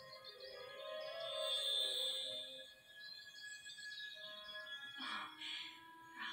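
Soft film-score music from a television, with held tones that swell about a second in and fade by the third second, and a short breathy sound about five seconds in.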